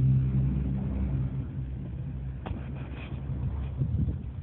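A motor running steadily with a low, even hum.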